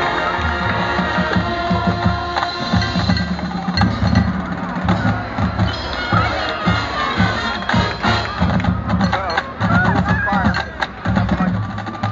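High school marching band playing, with held wind-instrument chords in the first few seconds giving way to repeated drum beats. Crowd voices and cheering are mixed in.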